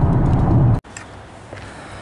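Steady low road and engine rumble inside a moving car, which cuts off abruptly less than a second in, giving way to a much quieter outdoor background.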